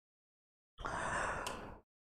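Dead silence, then about a second in a person's breath, a soft rush of air lasting about a second that fades out.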